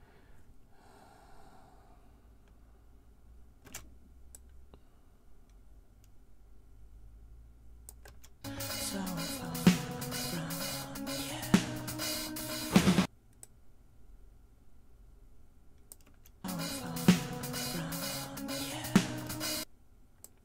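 Playback of a drum-cover recording, drum kit and cymbals with music, heard in two short runs of about four and three seconds that each stop abruptly, the first starting about eight seconds in. Before that there are only a few faint clicks.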